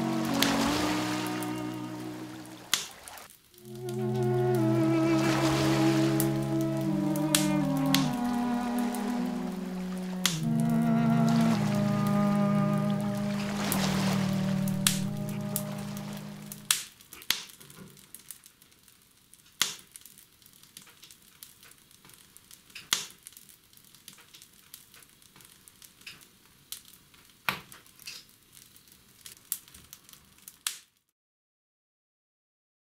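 Slow music with sustained, slowly changing chords fades out about halfway through. It leaves the irregular crackling and sharp pops of a wood fire burning in an open-doored wood stove.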